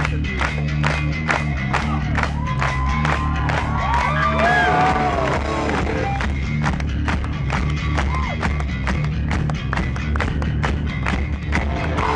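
Hardcore punk band playing live through a festival PA, an instrumental passage with no vocals: guitars and bass over a steady drum beat. Crowd voices cheer and whoop over the music, most clearly a few seconds in.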